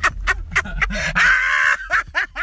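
A man laughing hard in quick cackling bursts, breaking into a long high-pitched squeal of laughter past the middle.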